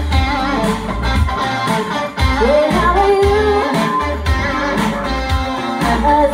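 A rock band playing live through amplifiers: a V-shaped electric guitar over bass and drums, with a woman singing lead.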